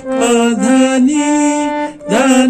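Harmonium played note by note in a sargam exercise (alankar), the notes stepping upward about every half second, with a man's voice singing the note names along with the reeds.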